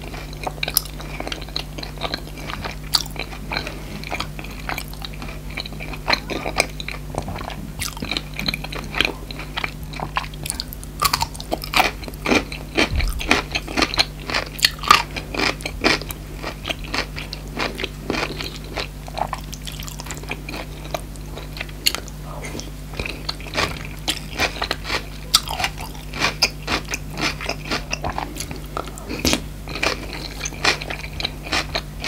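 Close-miked chewing and biting of food: a dense, irregular run of crisp crunches and smacks, including a bite into a crunchy pickled gherkin, over a faint steady low hum.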